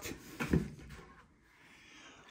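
Cardboard carton lid being lifted open by hand: a short knock about half a second in, then fainter scraping and rustling of the cardboard.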